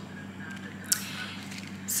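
Quiet room tone with a steady low hum, a brief soft hiss about a second in, and a breath as speech starts again near the end.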